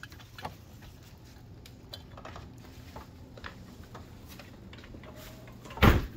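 A click of the key and latch in a door lock as the door opens, then scattered light clicks and handling noises over a faint steady hum, with a loud knock just before the end.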